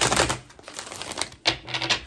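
A deck of tarot cards riffle-shuffled by hand. A fast rattle of card flicks comes at the start and another about one and a half seconds in, with a few lighter taps between.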